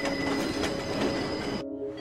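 Freight train rolling along the track, its steel wheels squealing on the rails with high steady tones; the train noise cuts off suddenly near the end.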